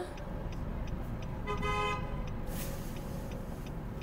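A car horn sounds once, a short steady toot of about half a second about a second and a half in, over the low rumble of traffic and engine heard from inside a car.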